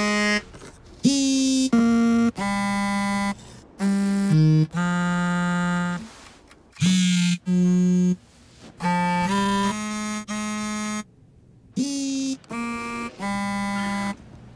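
Mobile phones ringing one after another: short synthesized ringtone melodies of a few steady beeping notes each, stopping and starting with brief gaps between them.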